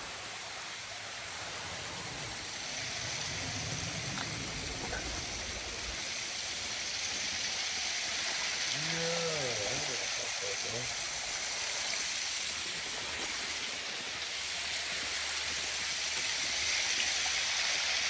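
Steady rushing of a small waterfall and stream cascading over rock ledges, an even hiss throughout. A voice is heard briefly about halfway through.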